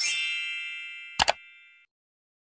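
Sound effects of an animated subscribe button: a bright, sparkly chime that rings and fades away, with a quick double mouse click about a second in as the button is pressed.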